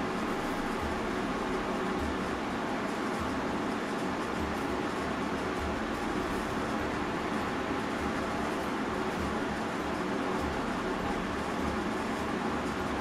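Steady background hiss with a low hum, unchanging throughout: constant machine or room noise of the kind a fan or air conditioner makes.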